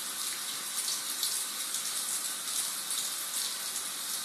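Kitchen tap running steadily into a stainless-steel sink, with small irregular splashes as a cat scoops water from the stream with its paw.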